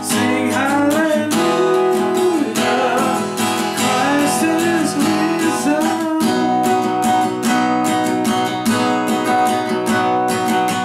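Acoustic guitar strummed in chords, with a man's voice singing along over it for about the first six seconds, after which the strumming goes on alone.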